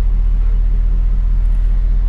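Idle of a 2008 GMC Sierra 1500's Chevy V8, fitted with aftermarket shorty headers and exhaust: a steady, even low rumble heard from inside the cab.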